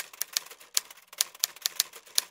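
Typewriter keystroke sound effect: a rapid, uneven run of sharp key clicks, about eight a second, keeping pace with text being typed out on screen.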